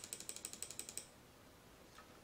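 Faint, rapid run of computer-mouse clicks, about ten a second, that stops about a second in.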